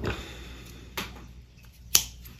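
Two short, sharp clicks about a second apart over faint room noise, from handling at a fly-tying bench.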